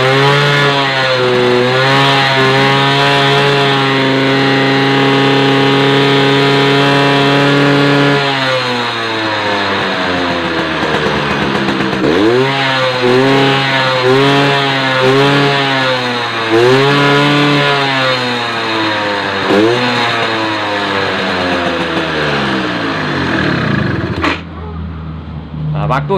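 Suzuki RC single-cylinder two-stroke motorcycle engine revved up and held high for several seconds, then blipped about six times before falling back toward idle near the end. The throttle is being worked to drive the oil pump faster, after its opening was turned down to curb excessive two-stroke oil use.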